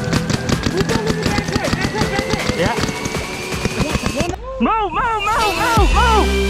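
Rapid paintball marker fire in a fast string of sharp cracks, mixed with background music that has a slowly rising tone. The firing stops about four seconds in and the music carries on alone.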